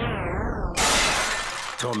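Channel-ident sound effects: a loud noise sweep falling in pitch cuts off, and just under a second in a sudden glass-shattering crash hits and dies away. A voice-over starts near the end.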